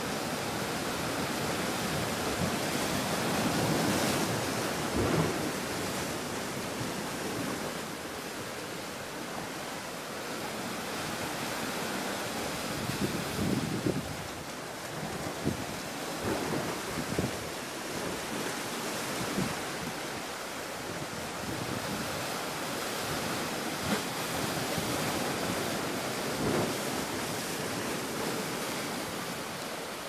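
Sea waves washing against a rocky shore, with wind buffeting the microphone in gusts; the noise swells and eases over several seconds.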